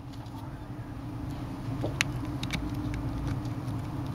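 A steady low hum, growing slightly louder, with a few faint light clicks as the cracked phone is handled.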